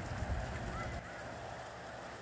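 Geese honking faintly, a couple of short calls near the middle, over a low rumble that drops away about a second in.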